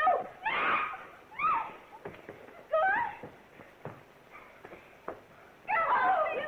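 High voices crying out and shrieking in short bursts during a scuffle, with a few sharp knocks between the cries and more cries near the end.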